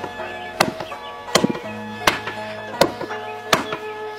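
A square-headed hammer pounding a slab of black ink paste on a wooden block, five heavy strikes about 0.7 s apart, as the soot-and-glue dough is beaten to make traditional Chinese ink. Background music plays underneath.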